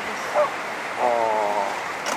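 A person's short vocal sound, then a held, even-pitched voiced note lasting well under a second, over a steady rushing background noise.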